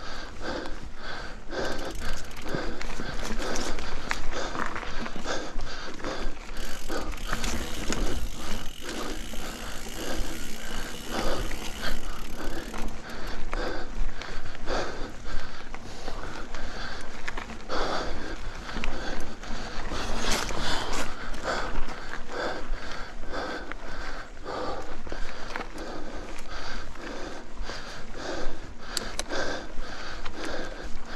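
A mountain-bike rider breathing hard, in repeated heavy breaths, while pedalling uphill. The bike rattles over the dirt forest trail underneath.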